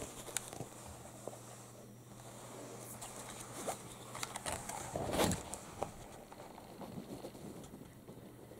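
Hands handling a Panasonic HC-V380 camcorder: faint, scattered plastic clicks and rustles, the loudest cluster about five seconds in, over a steady low hum.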